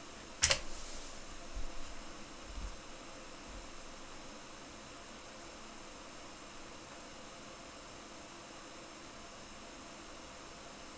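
A single sharp computer-keyboard key press about half a second in, the Enter key sending a typed command, followed by a few faint low knocks. The rest is a steady faint hiss of room tone with a light fan-like hum.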